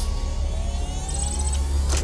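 Cartoon sci-fi machine sound effect, a device powering up: a deep steady rumble under a slowly rising whine, with a quick run of high electronic beeps midway and a sharp hit near the end.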